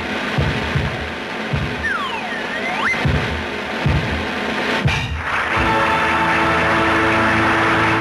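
Dense music from an old film soundtrack, with a run of low thuds and, about two seconds in, a whistle-like glide that slides down and then back up. The last two seconds settle into a steady held chord before the sound cuts off abruptly.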